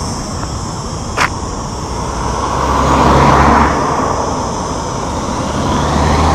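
A car passing close by on the road: tyre and engine noise swells to a peak about halfway through and fades, with a low engine hum at its loudest. A single short click about a second in.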